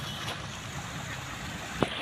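Hooked pomfret splashing at the surface of a pond as it is played on the line: a steady wash of water noise, with one short sharp click near the end.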